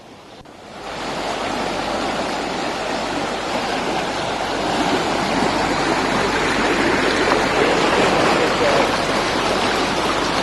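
Floodwater rushing steadily through a breached lake sluice, fading in about a second in and growing slightly louder.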